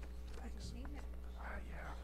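Quiet murmured voices over a steady low hum, with a soft rustle near the end.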